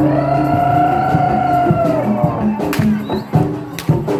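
Live traditional Javanese accompaniment for a Bantengan dance: one long held note for about two seconds over a repeating percussion pattern, with two sharp cracks near the end.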